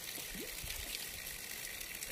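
Running water, a steady, even rush with no breaks.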